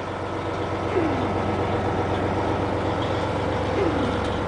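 Heavy diesel engine of an MCI 102-DL3 coach, a Detroit Diesel Series 60, idling with a steady low hum, heard from inside the passenger cabin. Two short falling squeaks come through, one about a second in and one near the end.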